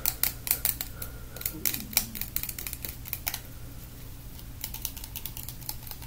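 Fast, irregular tapping and clicking of fingernails on a small hand-held object, busiest in the first three seconds, thinning out, then picking up again near the end.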